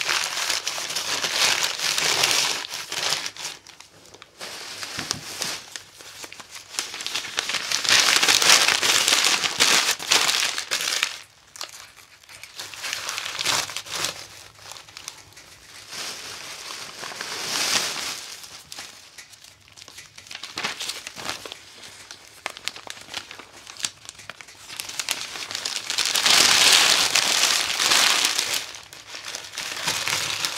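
Paper being crumpled and pushed into a wood stove's firebox while kindling a fire: spells of loud crinkling and rustling a few seconds long, the loudest about eight seconds in and near the end, with quieter rustling between.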